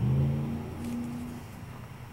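A person humming a few low notes that fade out within the first second and a half, with a faint click about a second in.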